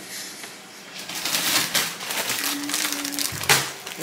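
Plastic bag of sliced strawberries crinkling as it is picked up and handled, a dense crackle starting about a second in, with a sharp click near the end.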